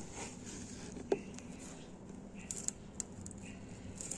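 Faint scratching and light ticks of a screwdriver tip pressed against a hard plastic planter wall, with one sharper click about a second in. The screwdriver has cooled and fails to pierce the plastic.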